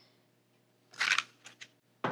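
Paper butter wrapper rustling briefly as it is peeled back, about a second in, followed by two faint ticks.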